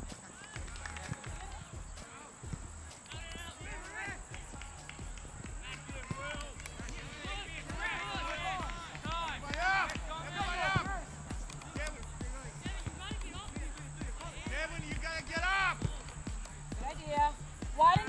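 Distant, unclear shouts and calls of players and spectators across a soccer field. Short rising-and-falling calls overlap, growing busier and louder about halfway through and again near the end.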